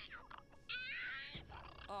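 A short, high-pitched animal cry of about half a second near the middle, at a low level, from the cartoon episode's soundtrack.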